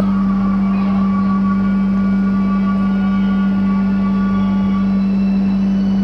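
A loud, steady low hum at one constant pitch, with fainter steady tones above it, unchanging throughout.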